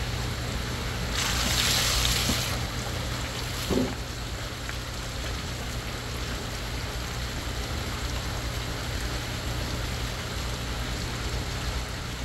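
Water running out of a bead filter's loosened PVC drain fitting and splashing onto gravel, with a louder hiss about a second in that lasts about a second and a half.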